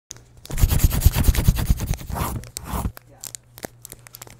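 Paper crumpling and crackling, a dense burst of rapid irregular crackles lasting about two and a half seconds, followed by a few faint scattered ticks near the end.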